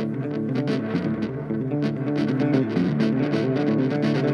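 Electric guitar and harmonica playing live together, the guitar picking a steady rhythmic pattern of notes.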